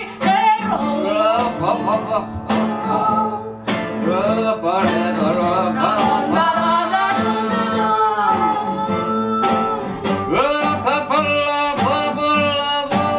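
Live acoustic folk duo: two acoustic guitars strummed with a woman singing the melody.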